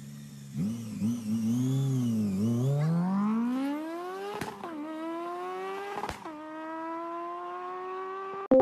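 Car engine sound revving up through the gears: it idles, is blipped a few times, then climbs steadily in pitch. A sharp click and a drop in pitch come at each of two upshifts, about four and a half and six seconds in.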